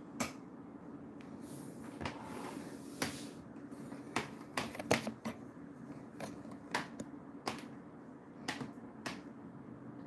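A knife slicing jellied cranberry sauce on a plate, its blade clicking against the plate about a dozen times at irregular intervals.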